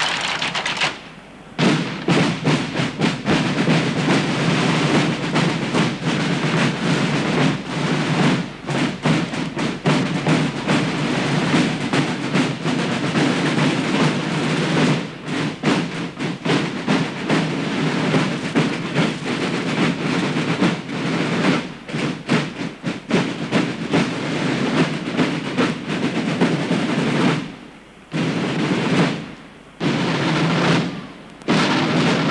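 Massed marching drums beaten by hundreds of drummers at once, a dense, rapid, continuous drumbeat. It breaks off briefly about a second in and twice near the end.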